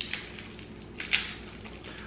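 Plastic lollipop wrapper rustling briefly as it is handled and unwrapped: a faint click at the start, then a short crinkle about a second in.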